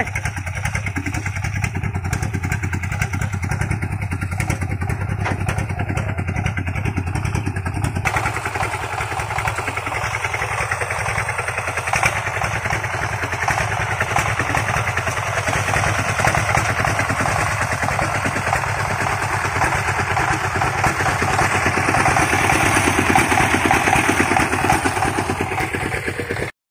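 Single-cylinder diesel engine of a công nông farm truck running steadily. Its sound changes about 8 seconds in and grows louder near the end.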